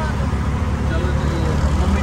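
Auto-rickshaw engine running and road noise heard from inside the open cab while riding in traffic, a steady low rumble.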